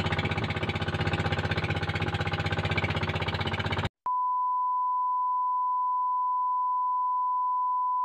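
A boat engine running with a fast, steady pulsing beat, cut off abruptly about four seconds in. After a moment's silence, a steady one-pitch test-tone beep of the kind played with colour bars follows.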